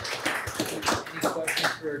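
Scattered hand clapping from a small audience: quick, uneven claps that die away near the end, with voices talking over them.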